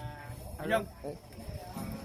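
People's voices at low level between sentences of talk: a briefly held vocal sound at the start and another short one about three quarters of a second in.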